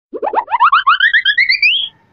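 Comedy sound effect: a quick run of about a dozen short springy boing notes, climbing steadily in pitch over about a second and a half.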